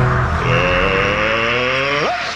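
A rising whine with a hiss beneath it starts about half a second in and cuts off at the end, over the low beat of the intro music: a transition sound effect.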